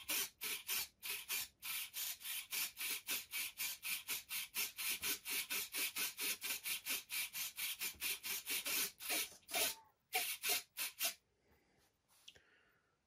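Rapid rhythmic scratching or rubbing, about four to five short hissy strokes a second, which breaks off briefly, resumes for a few strokes, then stops suddenly.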